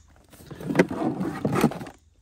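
Hard plastic scraping and knocking as an electronic predator call is lifted out of a plastic Yeti Loadout GoBox, with two sharper knocks, one a little under a second in and one about a second and a half in.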